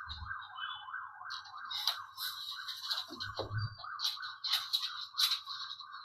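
A warbling electronic tone wavering up and down about four times a second, with scratchy crackles over it: a glitch in the video call's audio.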